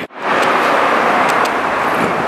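Steady, loud road-traffic noise, an even rush with no rise or fall, starting right after a brief drop-out near the start.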